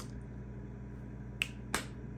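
Two sharp, quick clicks, a third of a second apart, near the end, over a low steady room hum.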